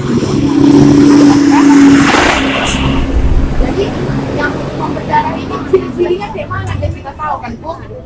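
A motor vehicle passing close by: a loud, steady engine tone in the first two seconds, then its noise fades away over the next few seconds.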